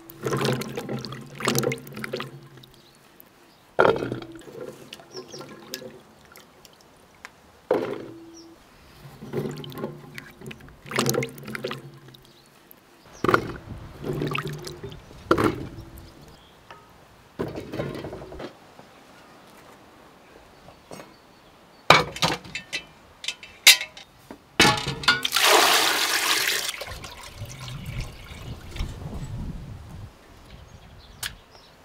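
Water splashing as new potatoes are rubbed and washed by hand in a basin of water, in irregular bursts, with a longer pour of water about 25 seconds in.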